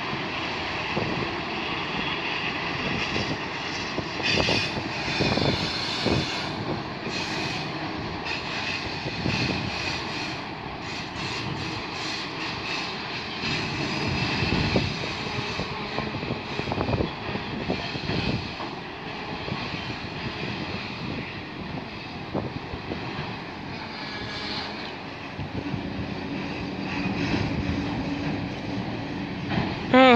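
A long freight train of autoracks and boxcars rolling slowly past, giving a steady rumble of steel wheels on rail with thin high-pitched wheel squeal and scattered knocks.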